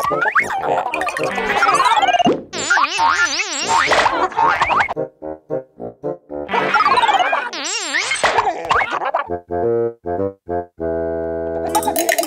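Cartoon machine sound effects, played twice over: a falling glide, a fast wobbling electronic warble, then a run of quick choppy beeps. A steady buzz comes near the end.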